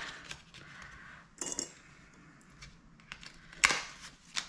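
Paper money and a card being handled on a tabletop: soft rustles and small taps, with a brief rustle about a second and a half in and a louder, crisp paper crackle near the end.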